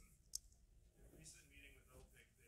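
A single sharp click about a third of a second in, against quiet room tone.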